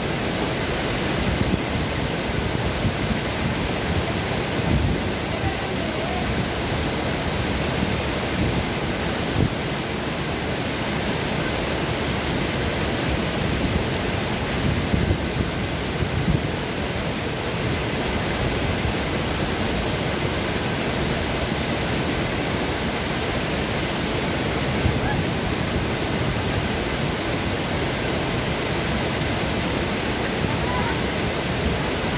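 Small waterfall pouring through a stone weir into a pool: a steady, even rush of falling water.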